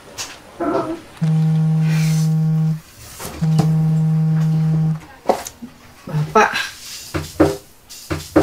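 A smartphone vibrating on a wooden table with an incoming call: two long, steady buzzes of about a second and a half each, a short gap between them.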